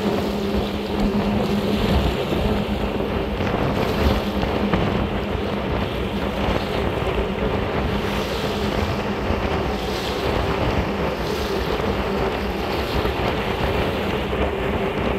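Tugboat's engine running steadily under way, a constant low drone, with the rush of water along the hull and wind buffeting the microphone.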